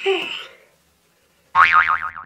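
A short falling sound, then about a second and a half in a cartoon-style "boing" sound effect whose pitch wobbles up and down.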